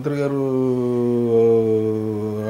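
A man's voice holding one long drawn-out vowel or hum at a steady pitch that sinks slightly, a hesitation sound between words.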